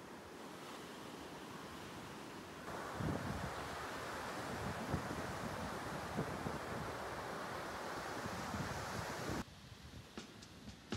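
Small waves washing up and hissing over a sandy beach, growing louder about three seconds in, with wind buffeting the microphone in low gusts. The sound drops off abruptly just before the end.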